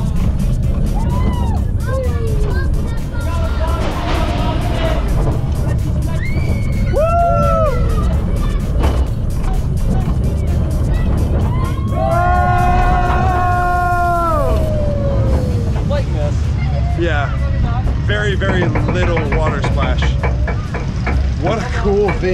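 Roller coaster ride heard from a camera mounted on the car: heavy wind rumble on the microphone and the train running along the track, with riders screaming and whooping. The longest, loudest scream comes about twelve seconds in.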